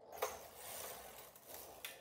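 Silver Reed knitting machine carriage pushed across the needle bed from right to left, knitting a row: a faint metallic sliding rattle as it runs over the needles, with a sharp click near the start and another near the end.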